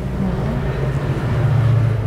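Steady low hum inside the carriage of a stationary SRT high-speed train, growing a little louder toward the end.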